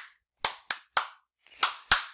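A man clapping his hands: about five sharp claps, unevenly spaced.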